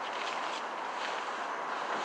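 Plastic tarp rustling and crinkling as it is handled and rolled up, over a steady background hiss.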